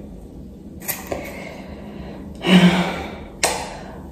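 Scissors snipping through braid extensions: a few short, sharp snips, the loudest about three and a half seconds in. A brief low vocal sound comes a little before the last snip.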